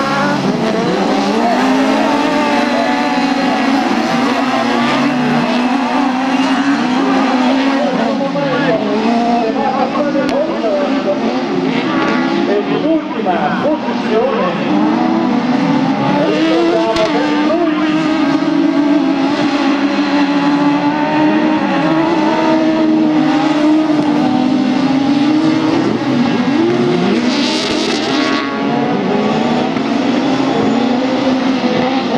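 Several 1600 cc autocross buggies racing together on a dirt track, their engines overlapping and revving up and down as they accelerate and lift for the corners. A brief hiss rises near the end.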